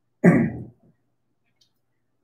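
A single throat clear into the microphone: one short, sudden sound about a quarter of a second in that dies away within half a second.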